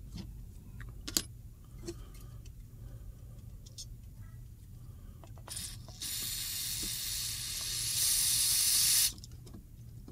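A SuperTech all-purpose parts cleaner aerosol sprays solvent through a pistol muzzle brake to strip out lubricant. It is one continuous hiss of about three seconds that starts about six seconds in, gets louder for its last second and cuts off suddenly. A few faint clicks come before it.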